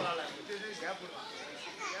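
Faint background voices of children chattering and calling out from the audience.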